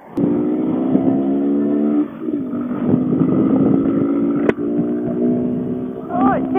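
Honda Grom's small single-cylinder four-stroke engine pulling away under throttle, its note rising steadily. The note dips about two seconds in, then dips again with a sharp click a little past the middle.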